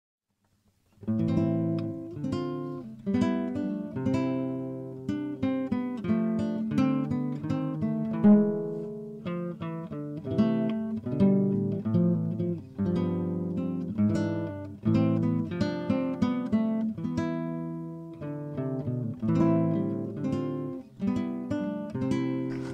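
Acoustic guitar music: a steady run of plucked notes and chords, each ringing and fading, starting about a second in.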